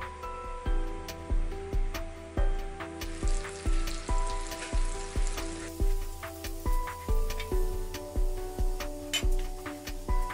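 Butter melting and sizzling in a nonstick Teflon frying pan, heating up until it foams. Background music with a steady beat plays over it.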